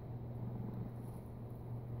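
A steady low hum over faint background noise, with no distinct events.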